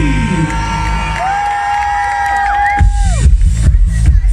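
Live orchestral dance music from an orchestra with a DJ, played over a concert PA: held notes that glide up and down in pitch, then a pounding dance beat kicks in about three seconds in. A crowd cheers along.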